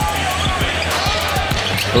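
A basketball being dribbled on a hardwood court in a quick series of bounces, over steady low arena music.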